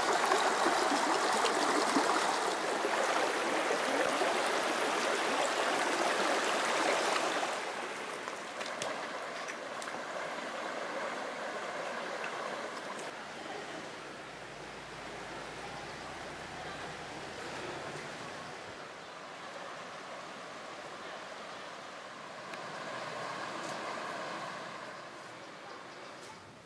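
A shallow river running over rocks and stones makes a steady rush of water. About seven seconds in, the sound drops to a quieter, calmer flow.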